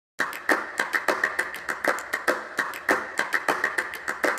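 A quick, uneven run of sharp clicks, about five a second, starting a moment in, each with a short ring after it.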